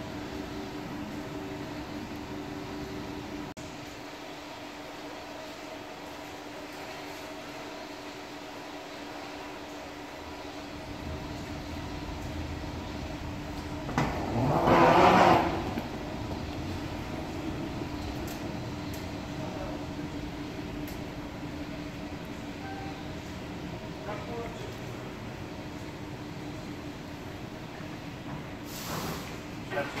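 Steady mechanical hum of station escalators and machinery in a glass-walled airport people-mover station. A low rumble sets in about a third of the way in, and a loud, brief noise breaks in about halfway through.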